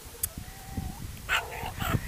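A dog whining once, a thin, faint cry lasting well under a second, followed by short rustling noises in the second half.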